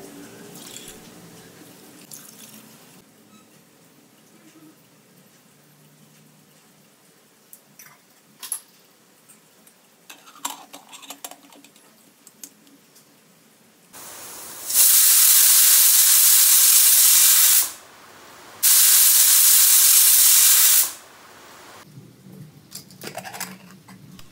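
Stovetop pressure cooker whistling twice: two loud bursts of steam hissing from the weight valve, each about two to three seconds long, the sign that the cooker has come up to full pressure. Before them, a long quiet stretch with a few faint handling clicks.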